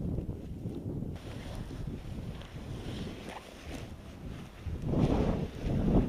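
Wind buffeting the microphone as a low rumble, surging in two louder gusts near the end.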